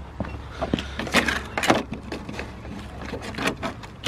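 Saw blades and their plastic packaging being handled in a plastic tool case: a string of clicks, rattles and crinkles over a steady low hum.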